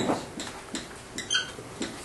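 Dry-erase marker writing on a whiteboard: a few short taps and strokes, with a brief squeak about one and a quarter seconds in.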